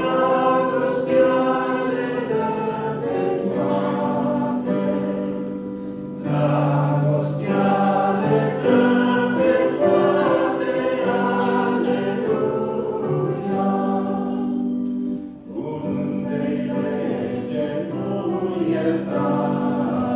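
A woman and a man singing a Christian song together as a duet into microphones, in long held notes. There is a brief break between phrases about fifteen seconds in.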